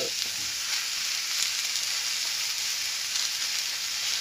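Turkey sausage, mushrooms and vegetables frying in a pan with a steady sizzle as the sausage is crumbled in.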